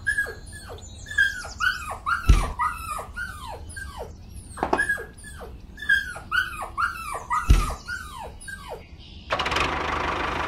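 A dog yipping and whimpering in two quick runs of short, high cries, each falling in pitch, with two loud thumps between them. Music starts near the end.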